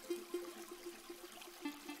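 Faint trickling, splashing water of a small waterfall running into a lake, a cartoon sound effect.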